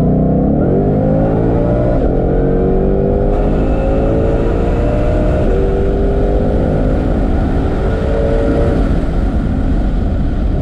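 Ford Shelby GT500's supercharged 5.2-litre V8 at wide-open throttle under boost, heard from inside the cabin. The engine note climbs steeply and drops sharply at two quick upshifts, about two and five and a half seconds in. Near the end the rising note stops as the throttle closes.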